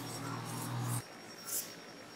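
Quiet room tone with a faint low hum that cuts off about halfway through, and a brief soft rustle of yarn being worked with a steel crochet hook.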